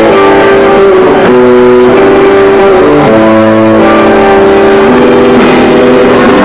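A live rock band playing, with sustained, distorted electric-guitar chords changing every second or so over drums and bass. It is recorded at near full level, so it sounds saturated and overloaded.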